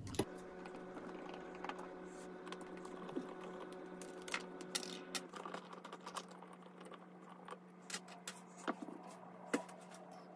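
Scattered light clicks and taps from a screwdriver and hands working on the metal case of a Yaesu FT-991A transceiver as it is taken apart, about one click a second, over a steady low hum.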